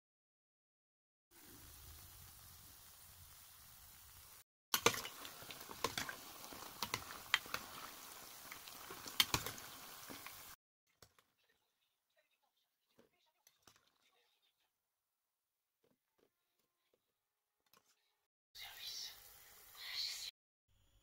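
Beignet dough frying in hot oil. It starts as a steady sizzle a second or so in, then turns louder and crackly with many sharp pops, and cuts off about halfway. Near the end comes a short burst of noise.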